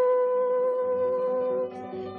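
A song with guitar accompaniment: a single note is held steadily for about a second and a half, then drops away and the accompaniment carries on more quietly.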